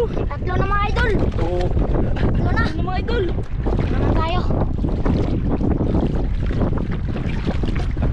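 Wind buffeting the microphone in a steady low rumble, over shallow seawater sloshing around wading legs. Voices call out in the first half.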